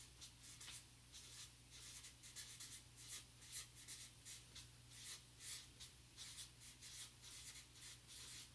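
Marker writing on a paper chart: faint, irregular scratchy strokes as a line of words is handwritten, over a steady low hum.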